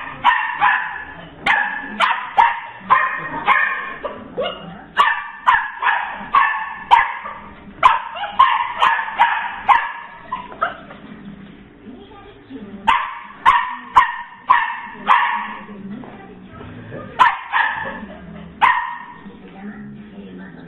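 A puppy barking over and over in runs of short, high barks, about two a second, with brief pauses between the runs.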